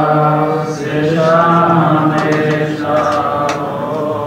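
A man chanting Gurbani in long, held phrases on a steady low pitch: a granthi reciting the Hukamnama from the Guru Granth Sahib.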